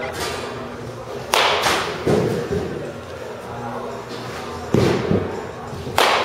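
Baseball bat swung hard through the air: sudden swishes and thuds come in two clusters, a little over a second in and again near the end.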